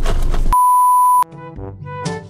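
A single steady, high-pitched electronic censor bleep cuts over the end of a man's speech about half a second in and stops sharply after under a second. Light background music with short plucked-sounding notes follows.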